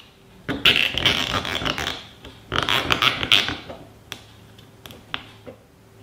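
Nylon zip tie being pulled tight through its ratchet head: two rasping zips of about a second each, followed by a few short, sharp clicks.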